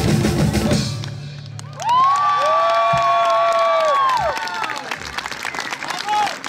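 A live folk band's drum-driven music cuts off about a second in. After a short gap, a held final chord from a droning instrument slides up into pitch, holds for about two seconds, then sags down and stops. Audience applause and cheering follow near the end.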